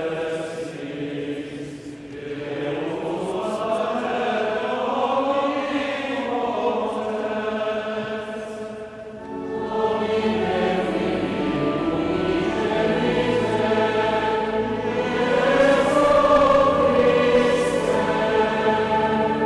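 Massed youth choirs singing together in phrases, with short breaks at phrase ends and a fuller, louder passage through the second half.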